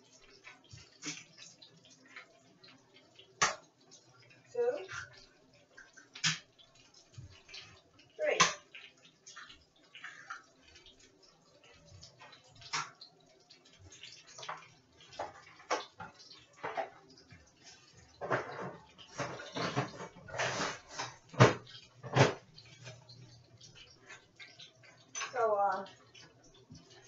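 Kitchen work at a counter: scattered sharp knocks and clinks of eggs being cracked against a bowl and things set down, with a denser run of knocks and splashy water-like noise around two-thirds of the way through.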